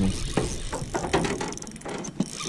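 Spinning reel being cranked quickly, a fast run of small mechanical clicks from its gears, taking up slack line as a hooked fish swims toward the angler.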